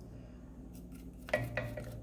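Wooden spoon stirring warm milk in a pan, with a few light clicks and one clearer knock of the spoon against the pan, as rennet is stirred in to dissolve.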